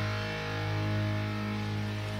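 Music: a single chord held and ringing steadily, with no beat or change, between stretches of promo voice-over.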